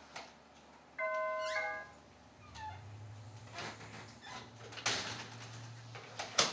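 A doorbell chime rings ding-dong about a second in, two notes lasting under a second in all. It is followed by clicks and knocks from the front door being opened and shut, the loudest knock near the end.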